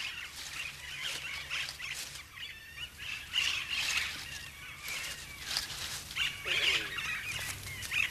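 Austral parakeets calling: a steady run of short, high chirps, with a harsher squawk a little after six seconds in.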